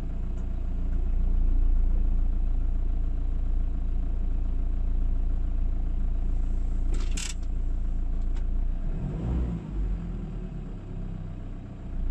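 Inside the cab of a Ford Transit 2.4 TDCi diesel van while driving: steady low engine and road rumble, which the driver, listening for a fault after smelling diesel, finds all right. A brief hiss comes about seven seconds in, and the engine note changes and drops from about nine seconds in.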